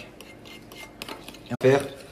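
Metal utensil clicking and scraping against a ceramic bowl as pancake batter is stirred. A short burst of a man's voice, the loudest sound, cuts in near the end.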